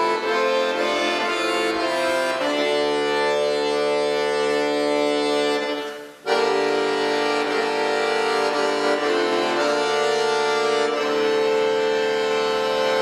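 Chromatic button accordion playing a solo in sustained, changing chords. About halfway through, the sound fades away briefly and then comes back suddenly on a new chord.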